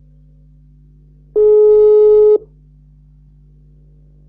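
A single steady telephone line tone lasting about a second, starting a little over a second in, over a steady low hum.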